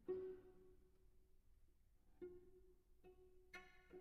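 Solo cello playing very softly: a single note sounds at the start and fades away, then quiet notes return about two seconds in, with a few short, sharper notes near the end.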